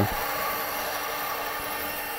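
Bandsaw running with a steady hum as a thin strip of walnut is fed through the blade.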